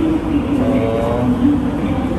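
Steady low rumble and hum of background noise, with no clear start or stop.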